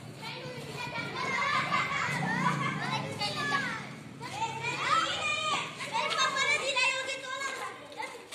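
Children shouting and calling out to one another as they play. Several high voices overlap, with rising and falling shouts.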